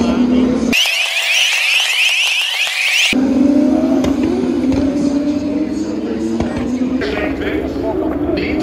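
Open-wheel race cars' engines running at speed on the circuit, their notes rising in pitch as they accelerate. For about two seconds near the start the low end drops out and only a high, rising whine is left.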